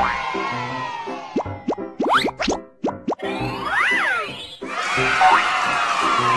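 Cheerful children's intro jingle with a steady beat. In the middle the beat drops out for cartoon sound effects: a run of quick rising pitch glides with plops, then a sweep that rises and falls, before the music comes back in.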